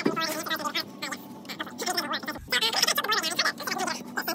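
Two people's conversation played back fast-forwarded: a rapid, garbled chatter with no intelligible words.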